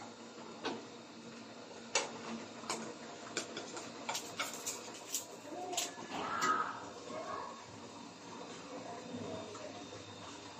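Metal spatula clinking and scraping against a frying pan and plate as fried bread slices are lifted out, in a string of sharp clicks over a faint steady hiss from the stove.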